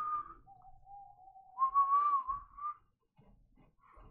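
A man whistling a few long, steady notes: a high note, a lower one held for over a second, then a high note again.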